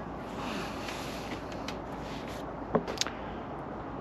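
Steady outdoor background noise with no distinct source, broken by a brief faint sound and a couple of short clicks about three seconds in.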